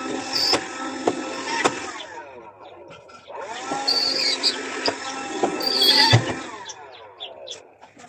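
Handheld cordless window vacuum running in two passes over glass: a steady small-motor whine for about two seconds, a short break, then again for about three and a half seconds, with a few sharp clicks.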